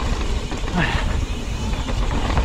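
Wind rushing over the microphone and mountain bike tyres rolling over a dirt trail at speed on a downhill run. The noise is steady and deep.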